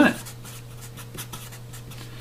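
Sharpie marker writing on paper: a quick series of short pen strokes as an equation is written out, over a low steady hum.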